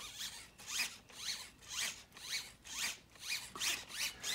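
RC truck steering servo whirring back and forth in short strokes, about two a second, each a quick rising-and-falling whine, as the receiver's gyro steers against the truck's turning with its phase now set correctly.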